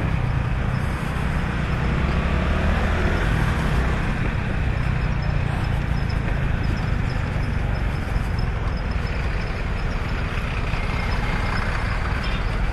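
Honda Pop 110i's small single-cylinder four-stroke engine running steadily as the motorcycle creeps through heavy traffic, mixed with the engines of the trucks and buses close alongside.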